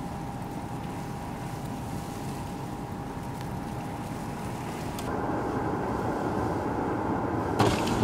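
Steady vehicle noise with a faint constant hum. About five seconds in it turns louder and fuller, and a short knock comes near the end.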